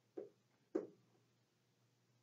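Two short soft knocks about half a second apart as a multimeter probe is pressed onto a limit switch terminal inside a gas furnace, followed by a faint low steady hum.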